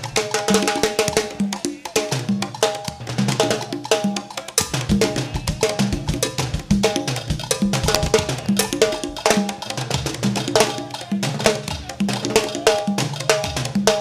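Cuban timba band playing live: an instrumental stretch carried by the drum kit and percussion in a fast, even rhythm, with short repeating pitched notes and no singing.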